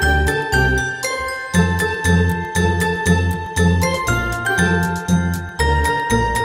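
Upbeat, Christmas-style background music with a steady bass beat and jingling bells.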